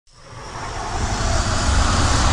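Rushing whoosh with a low rumble, swelling steadily louder from silence as an animated boombox flies into the picture.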